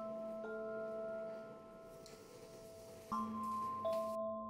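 Quiet background score of slow, sustained notes. A new note comes in about half a second in, and a fresh chord with a low note enters about three seconds in.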